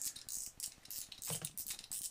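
Irregular light clicks and scrapes from a Cardinal spinning reel being worked by hand, its handle seized by saltwater corrosion while the spool and drag still turn. One duller knock a little past halfway.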